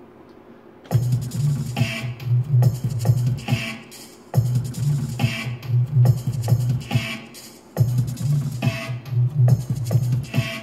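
A slow electronic dub drum groove played back over studio monitors. It starts about a second in, and a one-bar pattern repeats about every three and a half seconds with heavy low end, which fits the track's 70 bpm.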